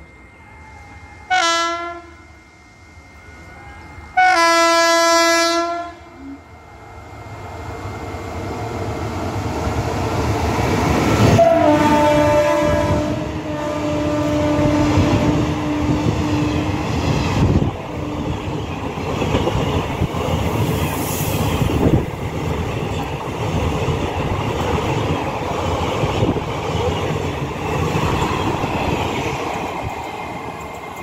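Horn of a WAP-5 electric locomotive: a short blast, then a longer one about three seconds later. The train's running noise then builds loudly and a third horn blast dips in pitch as the locomotive passes. The passenger coaches then rumble past with wheels clacking over the rail joints.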